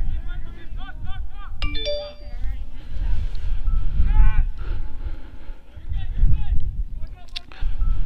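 Players' shouts carrying across a soccer field over a low rumble of wind on the microphone, with a brief tone about two seconds in and a sharp knock near the end.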